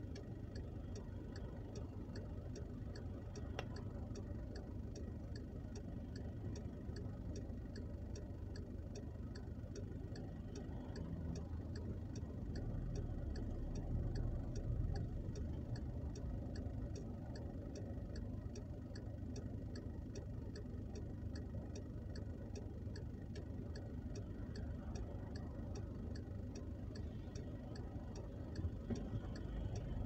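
A car's turn-signal indicator ticking steadily inside the cabin, over the low rumble of the car's engine as it idles and creeps in slow traffic.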